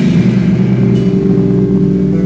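Amplified electric guitars holding a low chord that rings on as a loud, steady drone, with the drums dropped out.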